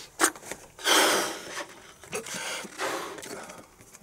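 Handling noise from latex balloons being picked up and moved: a sharp click just after the start, then several bursts of rustling, the strongest about a second in.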